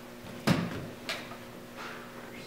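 A thump about half a second in, then two lighter knocks, as someone sits down on a padded piano bench and settles on it, over a faint steady hum.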